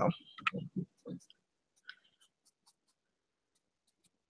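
Faint, sparse scratching of a fine paintbrush stroking acrylic paint onto a fabric bag.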